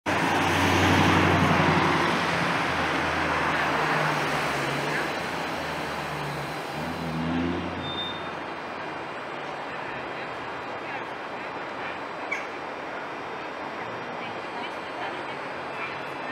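Street traffic: a car passes close by, loudest in the first two seconds, while a Tatra T6A5 tram rolls in and comes to a halt about eight seconds in. After that only a steady, quieter street noise remains, with one sharp click about twelve seconds in.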